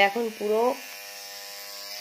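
Electric tattoo machine buzzing steadily as the needle works into the skin of a shoulder. A voice is briefly heard over it in the first second.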